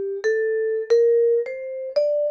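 Musser vibraphone played with yarn mallets: an ascending F major scale, one note after another at about two notes a second, each bar ringing clearly until it is damped just as the next is struck. The pedal is held down, and the notes stay separate because the following mallet presses each bar quiet (slide dampening).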